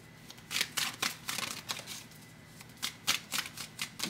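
A tarot deck being shuffled by hand: quick papery flicks and snaps of the cards in two spells, the first about half a second in and the second about three seconds in, with a short lull between.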